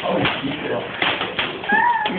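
Plastic toy lightsabers clacking in a mock sword fight, a few sharp knocks, with voices and a brief high, rising-and-falling cry near the end.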